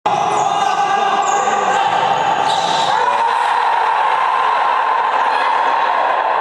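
Futsal match play in a sports hall, with a steady, loud high hum running under it throughout.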